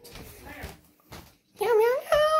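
A cat meowing: after faint sounds for the first second and a half, a loud call rising in pitch begins near the end.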